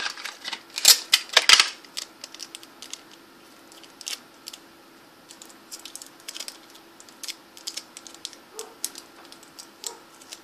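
Craft materials (cardboard, foil and tape) handled close to the microphone: a loud rustling, crinkling cluster about a second in, then scattered light clicks and taps.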